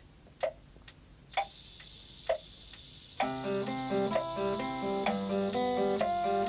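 Clock-like ticks, about two a second, then background music with plucked guitar comes in about three seconds in.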